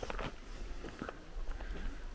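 Footsteps on a dry, rocky dirt trail while walking uphill: a few soft, irregular scuffs over a low rumble.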